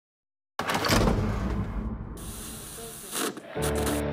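FM radio being tuned across the dial: hissing static and shifting noise start about half a second in. Near the end a station locks in, with steady music tones.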